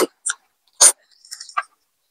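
Close-miked mouth sounds of eating ramen noodles: a few short slurps and chewing noises in the first second and a half.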